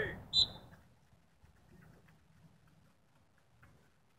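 Sprint start on a track: the end of a loud shouted start command, falling in pitch, then a brief high-pitched whistle-like blast about half a second in. After that only faint low background noise with scattered faint ticks as the runners go.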